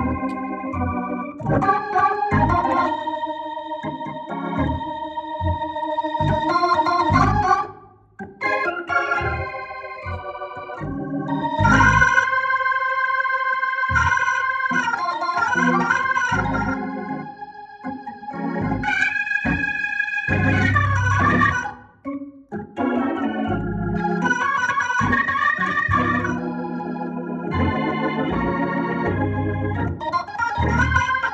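Hammond B3 organ played through a Leslie 142 speaker cabinet: held chords and runs on the manuals over strong low bass notes, dropping out briefly about eight and again about twenty-two seconds in.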